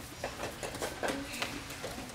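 A quick run of light, irregular taps and soft thuds, about eight in under two seconds, over a faint murmur of the hall.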